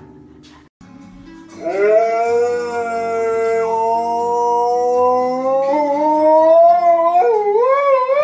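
A husky-type dog howling. One long howl begins about a second and a half in, rising at first and then holding steady for several seconds. Near the end it jumps to a higher, wavering howl.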